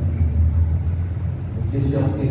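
A steady low rumble fills a pause in a man's speech, and his voice comes back in near the end.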